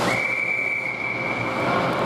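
Ice hockey referee's whistle: one long, steady blast of about two seconds, stopping play, over the rink's background noise.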